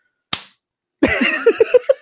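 One short, sharp smack, then about a second in, two men burst out laughing.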